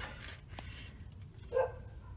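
Faint background noise in a break between words, with a small click about halfway through and a short voiced sound near the end.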